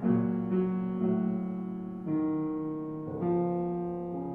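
A restored 1885 Richard Lipp upright piano being played: slow chords struck about every half second to a second, each left to ring and fade before the next.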